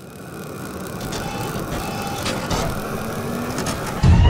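Logo-reveal sound effect: a dense, noisy build-up that grows steadily louder, with several sharp clicks through the middle.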